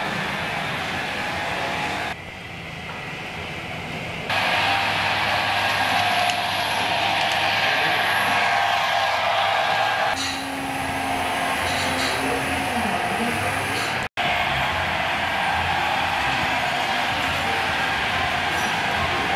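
HO-scale model trains running on a layout: a steady rolling whir and rattle of small wheels on track. The sound changes abruptly several times, with a brief dropout about fourteen seconds in.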